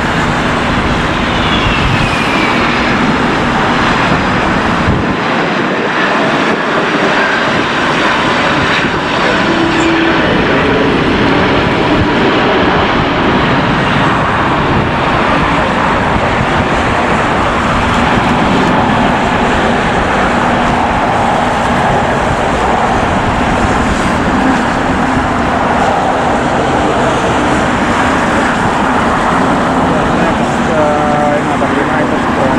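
Jet airliner engines, a loud steady rush of noise, with a faint falling whine in the first few seconds.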